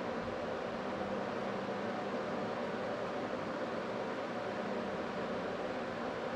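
Steady room tone: an even hiss with a faint low hum from the room's ventilation, with no distinct knocks or steps.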